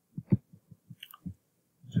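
A quick run of soft, low thumps, about six or seven in just over a second, followed by a brief pause.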